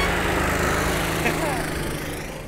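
Go-kart engine running as the kart pulls away from the start, a steady drone that fades as it moves off.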